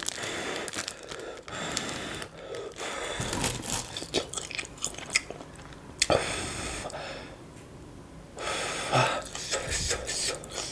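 Close-miked eating sounds: a person chewing and biting sticky rice and green papaya salad (som tam), with many small wet mouth clicks. The sounds drop off for a moment about seven seconds in.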